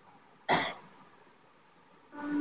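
A person coughs once, sharply and briefly, about half a second in, over faint room hiss.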